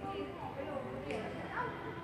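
High-pitched voices talking in the church, with rising and falling pitch that suggests children.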